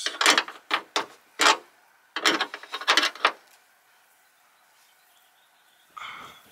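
Hand wrench tightening the mounting bolt of a hood lift support at the hood hinge: about six short metallic ratcheting strokes over the first three seconds, then quiet.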